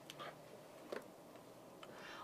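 Near-silent room tone with three faint clicks, roughly a second apart.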